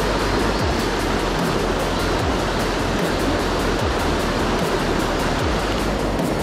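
Rushing water of a rocky mountain stream, a steady roar, with background music over it carrying a steady drum beat a little more than once a second.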